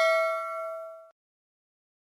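A bell-like metallic ding ringing out and fading away, gone about a second in.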